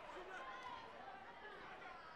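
Faint, indistinct chatter of several overlapping voices in a large hall.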